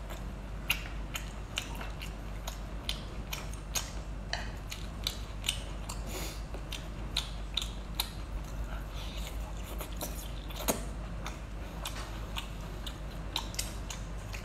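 Close-up chewing of rubbery sea snail meat: a run of sharp, irregular wet clicks and mouth smacks, a few a second, over a steady low hum.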